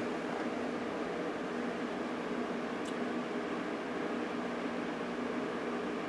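Steady hum and hiss of running computer hardware, the kind made by cooling fans, with one faint click about three seconds in.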